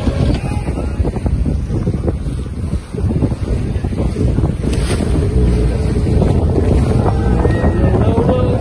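Wind buffeting the microphone and water rushing along the hull of a J Class sailing yacht under way, a loud, steady, gusty rush.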